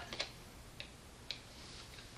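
Three faint clicks about half a second apart from a plastic lotion bottle being handled, over quiet room tone.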